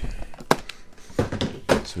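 A few sharp plastic clicks and clacks as a floppy disk is handled and put away in its holder.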